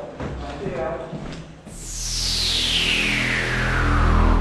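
A logo sting starting about one and a half seconds in: a whoosh falling steadily in pitch over a deep, steady drone that grows louder. Before it, a brief stretch of a voice and a few knocks.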